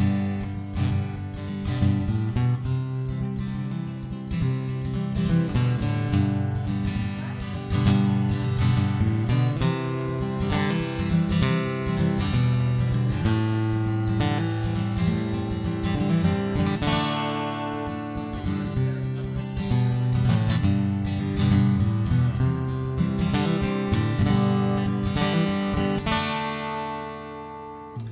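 Solo acoustic guitar playing a song's instrumental intro, chords struck in a steady rhythm. Near the end the strokes stop and the last chord rings out and fades.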